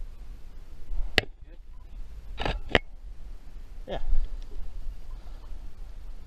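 Nikon DSLR shutter firing: two sharp single clicks, about a second in and again near the middle, over a low rumble. There are a couple of short voice sounds between them.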